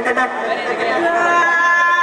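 Several voices chattering in a large hall, with steady held musical notes coming in about halfway through as the dance song starts over loudspeakers.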